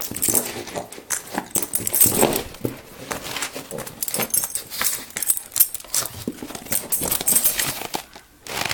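A pug puppy scuffling on carpet after a plastic wiffle ball: a dense, irregular run of scuffs and clicks, with short throaty sounds from the puppy, loudest about two seconds in.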